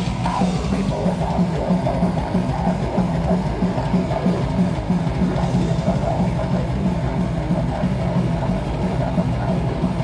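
Blackened thrash metal band playing live: distorted electric guitars, bass guitar and a fast drum kit in a loud, unbroken wall of sound.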